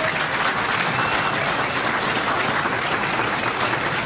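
Audience applauding, a steady even clapping.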